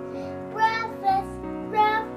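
Background music with a young child's high voice singing a few loud notes over it, about half a second in and again near the end.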